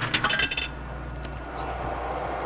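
A quick run of sharp glassy clinks in the first half-second or so, then a steady mechanical noise with a low hum.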